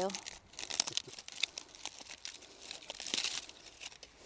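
Aluminium foil crinkling and tearing as it is pulled off flower stems by hand, in two spells of close crackle, the second about three seconds in.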